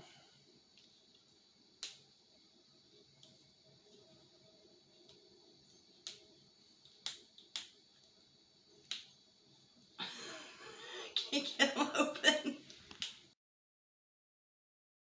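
Plastic acrylic paint marker being handled: sharp single clicks a second or more apart. About ten seconds in comes a burst of rapid clicking and rustling lasting about three seconds, which cuts off suddenly.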